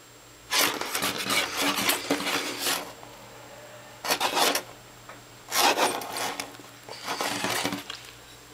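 Four bursts of close rustling and scratching, the longest lasting about two seconds, as the pet rat scrabbles at the hand and the bedding right by the microphone.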